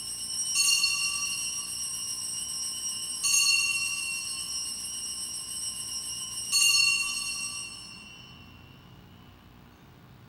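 Altar bells rung three times at the elevation of the chalice during the consecration. Each strike is a bright, high ringing that carries on until the next; after the third it fades away about eight seconds in.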